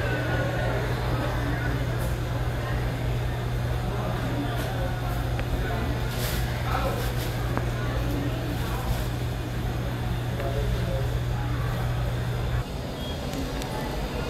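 A steady low mechanical hum with faint voices in the background; the hum cuts off abruptly about a second and a half before the end.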